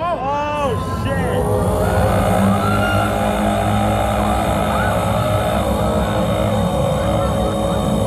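Eerie show soundtrack from the stage loudspeakers: a few wailing, arching pitch glides in the first second, then a sustained droning chord over a deep rumble.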